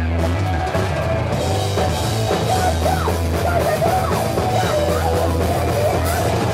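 Hardcore punk band playing live and loud: drum kit, guitar and vocals sung into a microphone.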